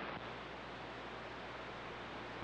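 CB radio receiver hiss with a faint low hum, steady, with no voice on the channel.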